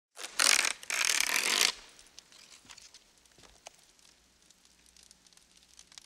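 A paper check torn out of a checkbook: two loud ripping tears in the first two seconds, followed by a few faint paper rustles and clicks.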